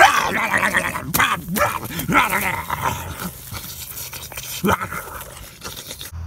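A person's voice growling and snarling like an animal, with a laugh, for a T. rex puppet mauling a platypus puppet. It is loudest at first and fades toward the end.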